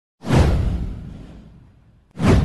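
An intro whoosh sound effect with a deep low rumble. It swells in sharply just after the start, sweeps down in pitch and fades away over about a second and a half.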